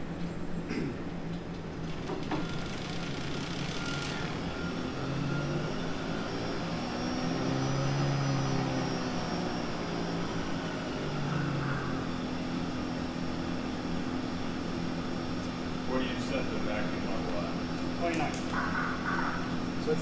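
Becker oil-lubricated rotary vane vacuum pump on a variable-frequency drive starting up: its motor hum rises in pitch, then falls back about midway and settles into a steady hum as the drive brings it down to idle at 30 Hz with the vacuum pulled to about 29 inches of mercury.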